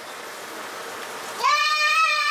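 A person's high, drawn-out vocal exclamation starts about one and a half seconds in and is held on one pitch, the reaction to a taste of strong rum eggnog. A faint steady hiss comes before it.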